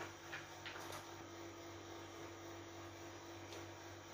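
Steady low electrical hum, with a few faint clicks in the first second.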